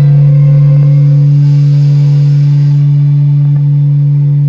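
Student string orchestra of violins and cello holding one long, steady low note, loud on the recording.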